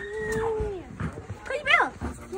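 A dog whimpering: a short high whine that slides sharply down in pitch near the end.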